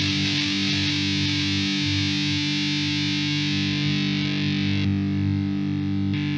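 Electric guitar holding one long, heavily distorted chord, played through an Ibanez Tube Screamer overdrive pedal in front of the distortion. The top-end fizz thins about five seconds in.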